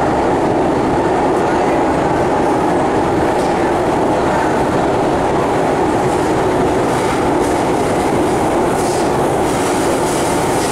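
Steady, loud running noise heard inside a moving MRT train carriage: an even rumble of wheels on rails and the train's running gear.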